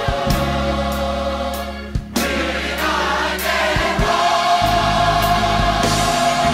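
Gospel choir singing full sustained chords over steady instrumental backing. About two seconds in, the sound breaks off briefly, then the choir comes back in on a loud held chord.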